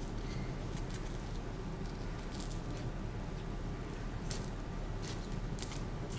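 Soft rustling and crinkling of paper and a dry wipe being folded by hand, a few brief crackles over a steady low room hum, with one sharper crackle about two-thirds of the way through.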